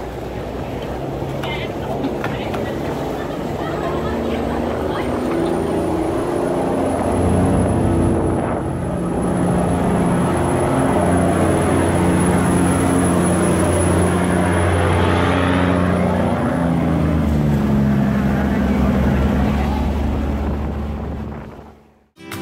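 Diesel engine of a steel cargo barge running steadily under way at close range, its low drone stepping slightly in pitch, over the churn of its propeller wash.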